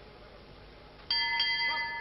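Boxing ring bell struck once about a second in, ringing for about a second with several clear tones at once. It is the signal that the round has ended.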